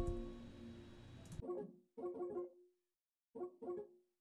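Plucked, guitar-like synth melody from an Omnisphere patch in FL Studio, played back in short stop-start snippets: a few notes about a second and a half in, a couple more soon after, then after a pause two more near the end. At the start, the tail of a loud low note is dying away.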